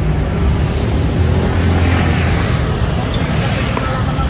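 Busy street traffic: cars and motor scooters running past, with a low engine rumble that swells about a second in and fades toward the end.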